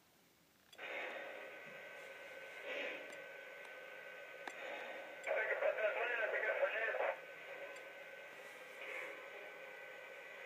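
Radio-chatter effect from a Lionel model locomotive's onboard sound system: thin, tinny radio hiss with a steady faint tone, and a muffled radio voice for about two seconds midway through.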